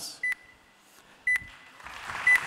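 A short, high electronic beep with a click, repeating about once a second, typical of a pitch timer signalling that time is up. Applause starts to rise near the end.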